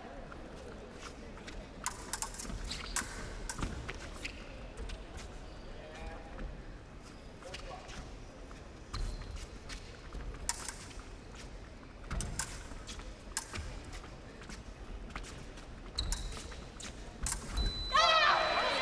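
Épée bout: scattered sharp clicks and taps of fencers' feet and blades over a low hall hum. Near the end a steady high electronic tone sounds from the scoring machine as a touch registers.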